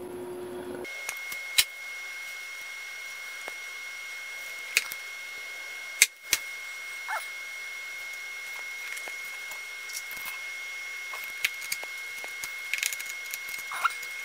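Small metal clicks and snips of wire cutters stripping thin signal wires, then the wires being handled and fitted into a terminal, with the sharpest click about six seconds in. A steady faint high-pitched whine sits under the clicks.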